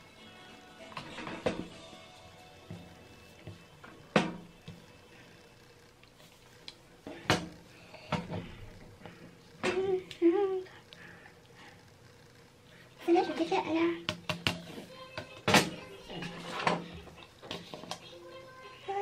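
Small objects being handled and set down: scattered sharp clicks and knocks a few seconds apart, with brief murmuring from a young woman in between.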